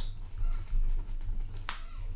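Red fineliner pen writing on a sheet of paper: faint scratching and small taps of the tip, with one sharp tick about one and a half seconds in.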